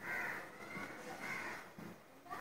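A bird calling twice, the calls about a second apart.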